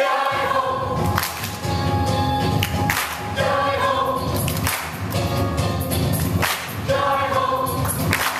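Mixed choir singing together with accompaniment, punctuated by sharp percussive hits every second or two.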